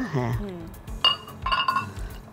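Glassware clinking twice, about half a second apart, each strike ringing briefly, as utensils and glass vessels knock together while water is added to the tamarind and jaggery.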